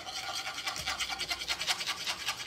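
A whisk scraping quickly around a metal saucepan of melted butter and sugar, in fast, even strokes, stirring until the sugars dissolve.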